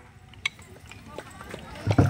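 Faint crowd voices with a few sharp wooden clicks of kolatam sticks struck together, the loudest about half a second in and another just before the end.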